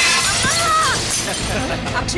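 A loud shattering crash, like glass or crockery breaking, its hiss dying away over about a second, with a woman's voice crying out over it.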